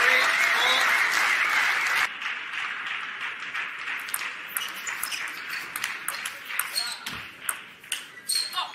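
Crowd noise and voices in a large hall, which drop away suddenly about two seconds in. Then a table tennis rally follows: the plastic ball clicks sharply off bats and table, many quick hits in the last few seconds.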